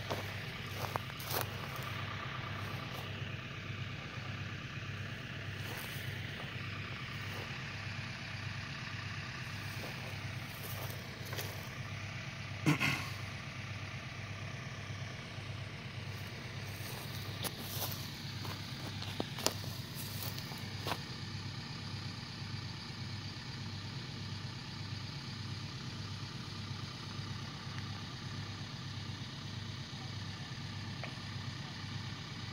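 An engine idling steadily, a low hum with an even pulse. A few sharp clicks and one louder knock about halfway through break in over it.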